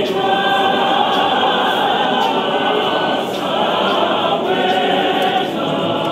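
A large church choir of many mixed voices singing a Zulu hymn together, holding long, sustained notes in harmony at a steady, full volume.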